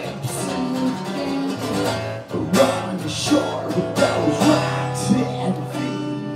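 Acoustic guitar strummed, chords ringing on between strokes that come every half second to a second.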